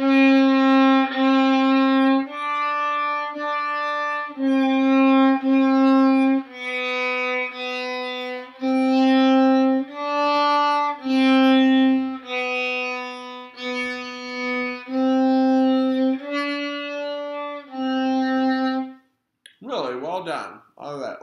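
Solo violin playing a slow line of single bowed notes, about one a second, several of them repeated, in a narrow low range around middle C. It is a sight-reading exercise fingered all on the G string, with the fourth finger taking the place of the open D.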